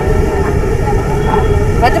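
Loud, steady low rumble of outdoor background noise with a faint steady hum. A woman's voice is heard faintly in a pause in her speech.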